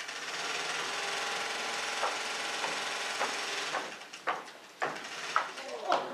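Sewing machine running steadily for nearly four seconds, then stopping. It is followed by a few sharp taps about half a second apart, footsteps on a wooden stage.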